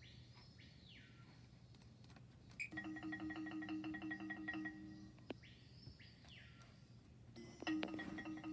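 Faint music of bell-like mallet percussion in the style of a toy xylophone, playing through computer speakers. It drops out twice for about two seconds, and in each gap a sweeping tone rises and falls.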